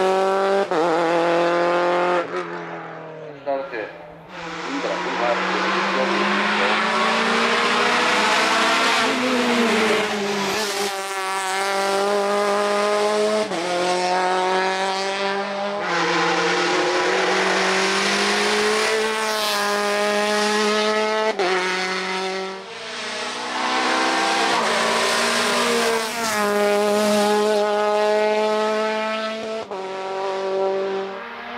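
Škoda Octavia Cup race car's engine at full throttle, its pitch climbing through each gear and dropping sharply at every upshift, over and over, with a brief lull twice as the car goes out of earshot and another pass comes in.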